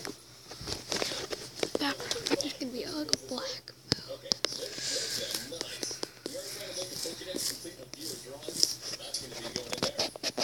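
Indistinct voices talking in the background, too unclear to make out words, with scattered sharp clicks and taps.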